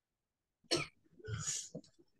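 A person coughing: one sharp cough under a second in, then a longer cough about half a second later.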